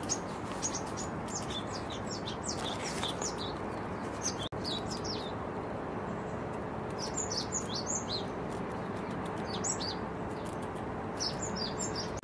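Small birds chirping in quick, high clusters of short notes over a steady background hiss. The sound drops out briefly about four and a half seconds in, and a faint steady hum is present after that.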